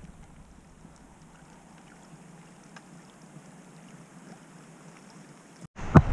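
Faint, steady trickle of a small moorland stream with a few light ticks. Near the end the sound cuts to the much louder rush of a fast river running over rocks.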